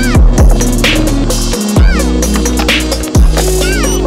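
Electronic background music with deep bass hits that slide down in pitch and synth notes that glide up and back down, over a steady beat.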